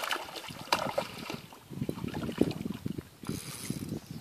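Handling noise close to the microphone: a run of irregular light clicks and knocks, with a brief patch of hiss near the end.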